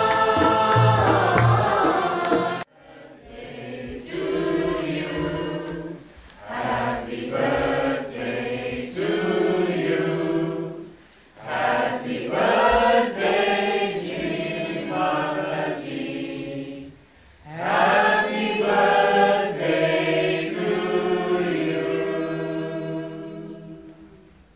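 Music with singing that breaks off abruptly about two and a half seconds in. Then a group of people sing together in a room, in four phrases with short breaks between them, fading out near the end.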